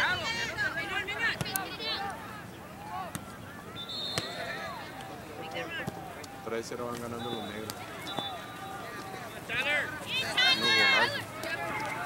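Soccer spectators and players shouting and calling across the pitch, short voices coming and going, with a louder burst of shouting near the end.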